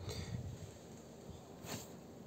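Quiet background with a faint, irregular low rumble and a short soft rustle near the end; no engine running is heard.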